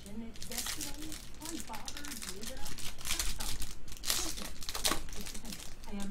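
Foil wrapper of a trading-card pack crinkled and torn open by hand, in several sharp crackling bursts.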